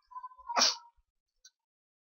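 A person sneezing once: a short, sharp burst about half a second in, with a brief faint click near the end.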